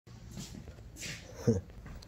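A dog giving one short, low woof about one and a half seconds in, with a couple of breathy noises before it.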